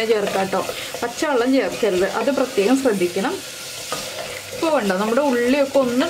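Sliced shallots sizzling in oil in a clay pot as a wooden spatula stirs them. Over the frying runs a louder wavering pitched sound, voice-like, which drops out for about a second past the middle.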